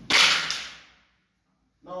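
A single sharp scraping knock, fading within about half a second, as the large chalkboard compass is picked up and handled against the board; dead silence follows.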